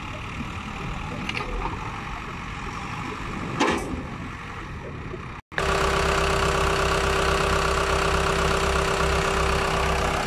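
Case 580 Super M backhoe loader's diesel engine running as the machine drives, heard from a distance. About halfway through there is a brief dropout, then the engine is heard up close idling steadily and louder, with an even hum.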